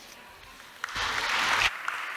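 Applause from the council chamber after a speech, starting about a second in.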